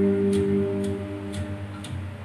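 Electric guitar note or chord held and ringing, fading away over the first second or so, over a low steady hum, with a steady ticking about twice a second.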